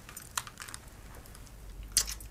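A set of car keys being handled and passed from hand to hand, clinking in a few light, sharp clicks, the loudest near the end.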